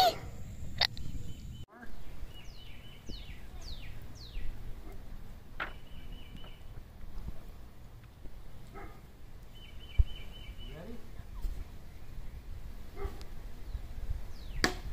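Outdoor ambience with birds: several short falling chirps and a few brief trills over a low wind rumble, with a single sharp knock about ten seconds in.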